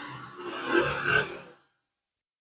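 A person's short breathy vocal sound, a grunt-like exhale lasting about a second and a half, fading out.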